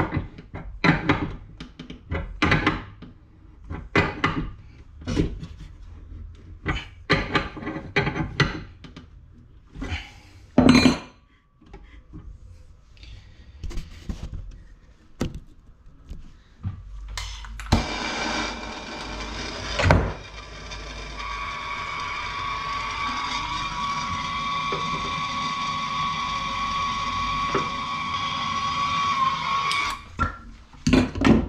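Spanner knocking and clicking on the brass compression fittings of copper pipework as they are tightened, about one knock a second, with one louder knock about ten seconds in. Past the halfway point a steady hiss with a faint high tone takes over and slowly grows louder.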